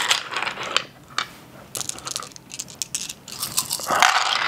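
Six-sided dice clattering: a handful is scooped from a wooden dice tray and rattled in cupped hands, a loose run of irregular clicks that grows busier about halfway through.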